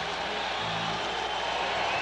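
Steady stadium crowd noise, with a band's held notes coming in about half a second in.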